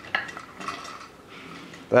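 Light metal clinks and a sharp click as the spring-loaded top rail, coil spring and metal roller shaft of a homemade wooden veneer press are handled.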